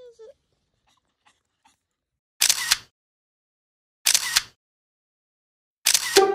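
Two camera-shutter clicks, about a second and a half apart.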